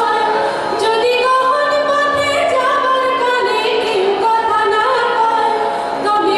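A young woman singing solo into a microphone, a slow melody with long held notes that slide between pitches, over a steady low tone.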